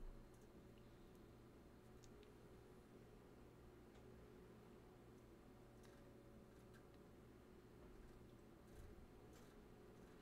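Near silence: quiet room tone with a faint steady low hum and a few faint scattered clicks.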